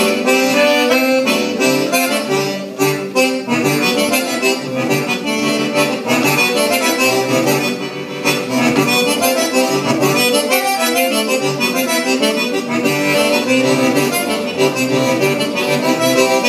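Small diatonic button accordion playing a lively forró-style dance tune, with quick melody notes over bass-button chords.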